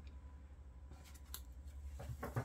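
Faint handling of a tarot deck: a few soft ticks and light rustles as the cards are picked up and moved, over a low steady hum.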